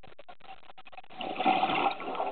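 Scuba diver's open-circuit regulator heard underwater: faint scattered clicks, then about a second and a half in a loud rush of exhaled bubbles.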